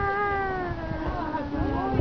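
A person's long, drawn-out 'wow' of amazement, held and slowly falling in pitch, fading out near the end.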